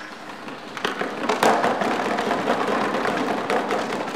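Audience applauding: clapping builds about a second in and continues steadily.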